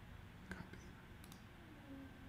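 A few faint computer mouse clicks over quiet room tone, the clearest about half a second in.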